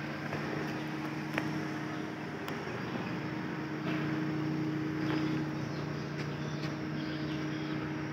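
A car engine idling steadily, an even low hum, with a few faint clicks.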